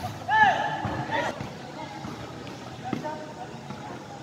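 Spectators' voices at a basketball game: a loud, high-pitched shout that rises and falls about half a second in, a shorter call about a second later, then lower chatter. A single sharp thump comes near the three-second mark.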